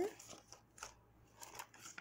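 Coffee-dyed book pages rustling and sliding against each other as they are handled, with a few faint, crisp ticks of paper.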